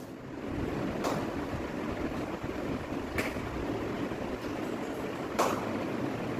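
Steady background noise with three faint, brief clicks about two seconds apart.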